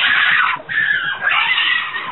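A young boy screaming loudly, in two long screams, the second starting about half a second in and wavering in pitch.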